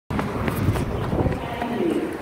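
Hurried footsteps on concrete, irregular and close, with a voice coming in just before the end.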